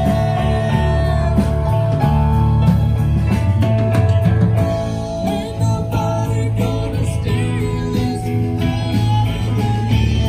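A live band playing a song, with guitar and drums.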